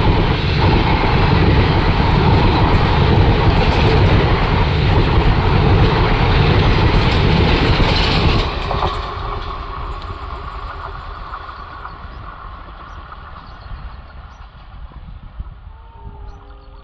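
Passenger train coaches rolling past at speed, a loud steady rush of wheels on rail. The noise drops sharply about eight and a half seconds in as the last coach passes, then fades away as the train recedes.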